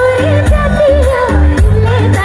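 A woman singing live into a microphone over loud amplified backing music. Her wavering melody rides on changing bass notes and a steady drum beat.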